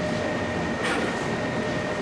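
Plasma transferred arc (PTA) hard-facing machine running: a steady hiss with a high, steady whine, and a brief crackle about a second in.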